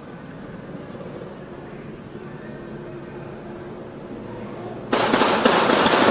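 Low background hum, then about five seconds in a sudden burst of police gunfire, many shots in rapid succession, heard from inside a patrol car.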